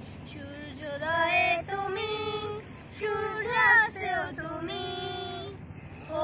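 A woman and two young boys singing a song together, holding sung notes with a short break about halfway through and another near the end.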